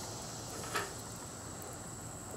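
Small twig fire burning quietly over wet tinder, with one faint snap a little under a second in, over a steady soft hiss.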